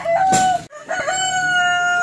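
Rooster crowing: a short first note, then one long held call lasting nearly two seconds.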